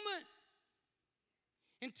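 A man's sermon voice finishing a word and fading into room reverberation, then a pause of near silence, ended by a quick breath in just before he speaks again.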